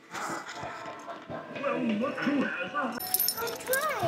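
Indistinct talking, with a light metallic jingling in the last second.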